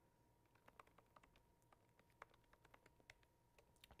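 Faint typing on a MacBook laptop keyboard: a dozen or so soft, irregular key clicks.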